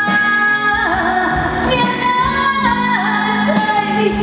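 A woman singing a Hokkien pop ballad live through a PA, holding long notes that slide from one pitch to the next, over a live band of drums, guitar and keyboard.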